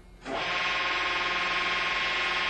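The hydraulic tensile-test machine's pump starts up about a third of a second in and runs with a steady, many-toned drone, unchanging in pitch.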